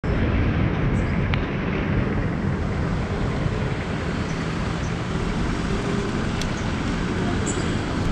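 Motorcycle engine idling close by, a steady low rumble, with a couple of faint clicks.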